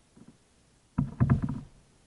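A kayak paddle stroke about halfway through: half a second of splashing water with a few sharp knocks.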